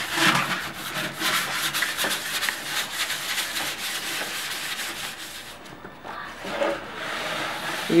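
Sandpaper rubbed by hand over the varnished pine sides of old cabinets in quick back-and-forth strokes, easing off for about a second near six seconds in. This is preparing the old finish for painting.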